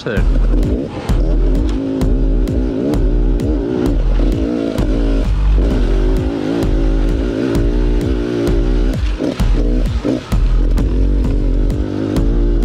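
Dirt bike engine being ridden hard, its pitch rising and falling with the throttle, with brief drops in between, over background music with a steady beat.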